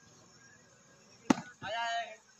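A volleyball struck hard by a player's hand, one sharp slap a little past halfway, followed near the end by a short shout.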